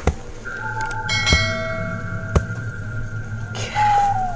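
Subscribe-button sound effect laid over the video: a bell chime holding steady ringing tones for about three seconds, with two sharp clicks partway through.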